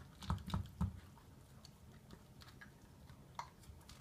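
Miniature dachshund eating from a hard plastic slow-feeder bowl: quick, irregular clicks of teeth and food against the plastic. Three heavier knocks come within the first second, then lighter scattered ticks.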